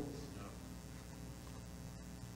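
Quiet room tone with a steady low electrical mains hum. The tail of a man's voice dies away at the very start.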